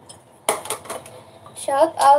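Kitchen utensils and dishes clattering: a quick run of sharp clinks and knocks about half a second in, followed by a woman starting to speak near the end.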